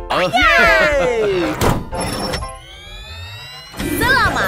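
Cartoon soundtrack effects: a character's cheerful voice with a falling pitch slide, a single thunk a little before halfway, then a rising tone for just over a second.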